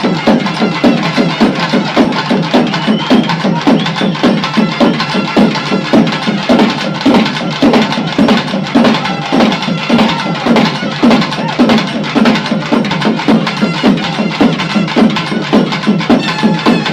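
Music driven by a fast, steady drum beat, played continuously.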